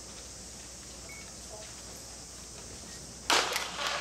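A hushed, steady background hiss, then a single sharp crack from the starter's pistol about three seconds in, echoing. It signals the start of a sprint race, and crowd noise begins to swell right after it.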